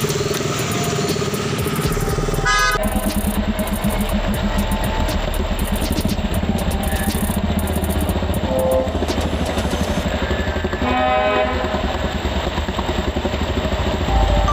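KTM RC 200 single-cylinder motorcycle engine running at low speed through floodwater in stop-and-go traffic, with a vehicle horn honking twice, about two and a half seconds in and again about eleven seconds in.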